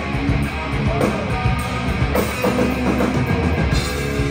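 Live hard rock band playing loudly: electric guitars through Marshall amplifier stacks and bass over a steady drum-kit beat.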